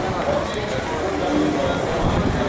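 Indistinct voices of several people talking at once, over a steady low rumble.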